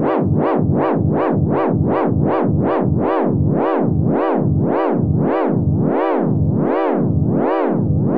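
A held sampled note on a Native Instruments Maschine+, its pitch swept smoothly up and down like a siren by a sine-wave LFO at full pitch depth. The wobble slows from about two and a half cycles a second to about one and a half as the LFO rate is turned down.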